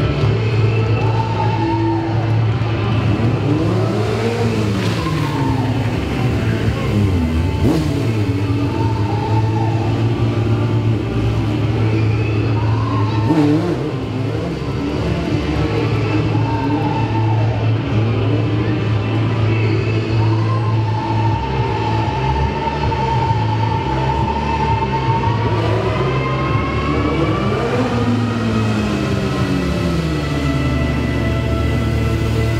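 Yamaha sportbike engine revving up and down again and again over loud background music.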